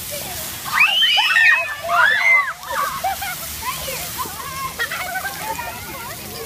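Children's high-pitched squeals and shouts, loudest about one to two and a half seconds in and then lighter chatter, over the steady hiss of splash-pad fountain spray.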